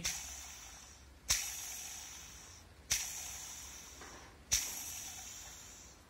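Timing-belt idler pulley from a 2.0 TDCi/HDi diesel, its original bearing at about 210,000 km, spun by hand four times. Each spin starts sharply and dies away over about a second with a rushing noise from the bearing, the sign of a worn bearing.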